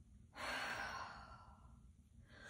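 A woman's sigh: one breathy exhale lasting about a second, fading out.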